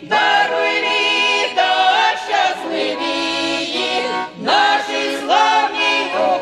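A Ukrainian folk vocal ensemble of women's voices singing in harmony with sustained, sliding notes, accompanied by a button accordion (bayan). The phrases break briefly at the start and again about four and a half seconds in.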